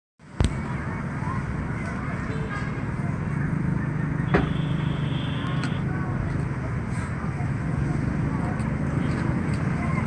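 Steady low street traffic rumble heard from high above, with faint distant voices. A sharp click right at the start, and a thin high whistle-like tone for about a second and a half from about four and a half seconds in.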